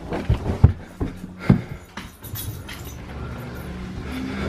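Footsteps thudding up carpeted stairs: several heavy steps in the first second and a half, then softer and steadier.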